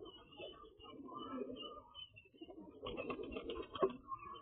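Pigeons cooing amid a crowded flock at feed, with a short clatter near the end.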